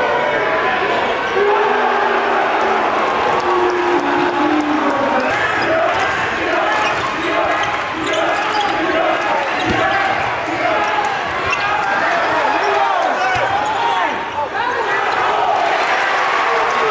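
Live basketball game sound: many voices from the crowd and players calling and shouting at once, with a basketball bouncing on the hardwood court.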